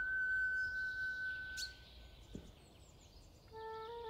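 A flute holds one long high note that fades out a little under two seconds in, leaving a pause in which faint birdsong and outdoor ambience are heard. Near the end the flute and piano come back in with sustained chords.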